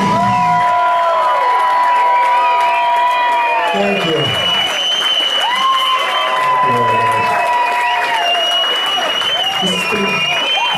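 Audience cheering and applauding right as a live rock band's song ends, with whoops and long, high, steady whistles over the clapping.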